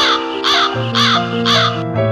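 A bird calling over and over, four harsh calls about half a second apart that stop near the end, over instrumental music with held chords.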